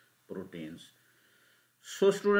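A man's voice making one short sound of about half a second early on, then a pause in near silence, with speech starting again at the very end.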